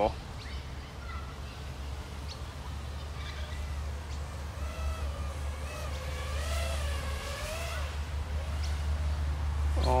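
A 5-inch FPV quadcopter, an iFlight Nazgul Evoque V2, flying some way off: a faint motor whine wavers up and down in pitch with the throttle from about four seconds in, over a steady low rumble.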